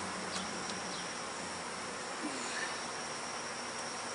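Honey bees buzzing steadily around an open hive box.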